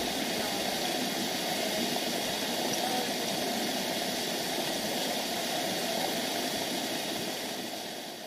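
Waterfall pouring over a rock face, a steady rushing of water that fades out near the end.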